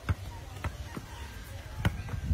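A soccer ball bouncing on a painted tabletop and being kicked: about four sharp thuds, the loudest near the end.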